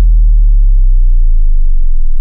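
Loud, deep synthesized tone with its pitch slowly falling: the bass sound effect of an animated logo sting.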